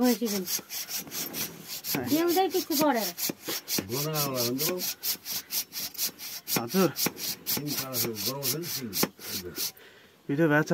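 Hacksaw blade cutting through a water buffalo's horn in steady back-and-forth strokes, about five a second. Over the sawing the restrained buffalo gives several drawn-out calls that rise and fall in pitch.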